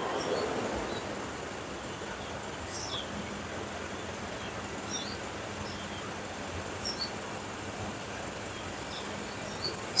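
Steady outdoor background noise, an even hiss, with a few faint, short, high bird chirps scattered through it; the pigeon itself is not heard cooing.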